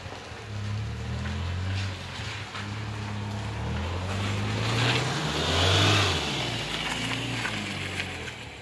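Engine of another motor vehicle running nearby, its low note shifting in pitch, growing louder about five to six seconds in.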